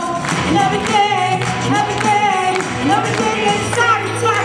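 A woman singing a sustained, gliding melody into a handheld microphone over accompanying music with a steady low bass note and a regular beat.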